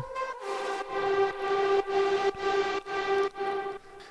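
The track's lead/atmosphere sound playing back from the DAW with the Soundtoys Decapitator saturation plugin switched on. It is a buzzy, distorted, sustained pitched tone, chopped into even pulses about twice a second.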